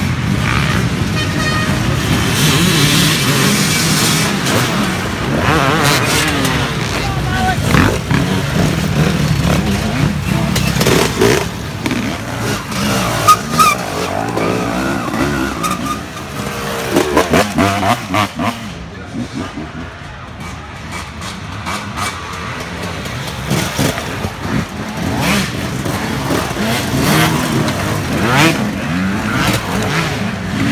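Several small youth dirt-bike engines revving and riding past one after another, their pitch rising and falling as each goes by, with a few loud peaks as bikes come close.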